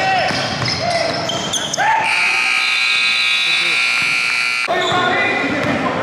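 A gym scoreboard buzzer sounds one long steady tone for nearly three seconds, starting about two seconds in and cutting off abruptly. Before and after it, sneakers squeak on the hardwood court and a basketball bounces.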